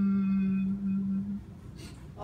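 A person moaning through their hands in mock crying, holding one long, steady low note that stops about a second and a half in.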